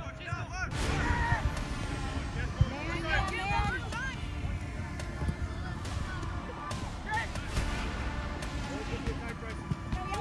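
Players and spectators shouting and calling across a soccer pitch during play: many short, drawn-out calls from several voices, none close to the microphone. A few sharp knocks are heard among them.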